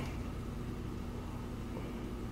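Quiet room tone: a steady low hum with faint hiss and no distinct events.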